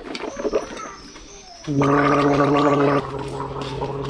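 A man gargling: a bubbly, crackling gurgle first, then from a little under two seconds in a loud steady tone held in the throat for about a second, going on more softly after that.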